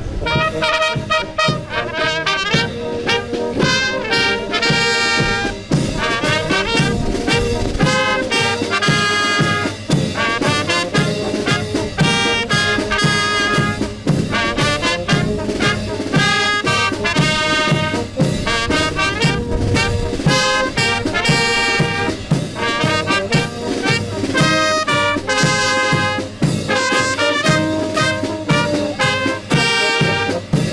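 A brass band strikes up: trumpets, saxophones and tubas play a lively tune over a steady beat.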